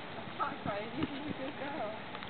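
A few soft hoof falls from a yearling paint filly stepping, under faint voices.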